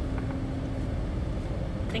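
Low, steady rumble of a car at idle, heard from inside the cabin with the driver's door open.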